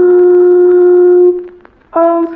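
Music: a horn-like instrument holding one long steady note of a slow, sad melody, which stops about a second and a half in.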